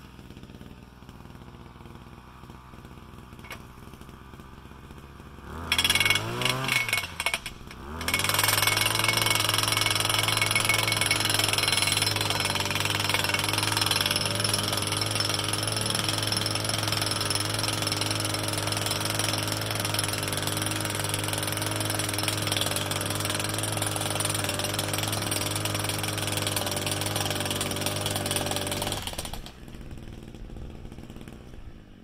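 Gas-powered post driver revving up about six seconds in, then running steadily at full throttle for about twenty seconds as it hammers a steel U-channel post into the ground, and stopping shortly before the end. A low engine hum runs underneath before it starts.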